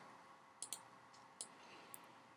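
Three faint computer mouse clicks over near silence, spaced under a second apart, as fields are selected and dragged in the software.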